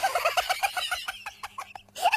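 A person laughing hard in a rapid run of high-pitched "ha" bursts, about eight a second, trailing off near the end.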